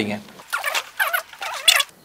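Short, soft, high-pitched voice sounds with paper rustling as a sheet is handed over.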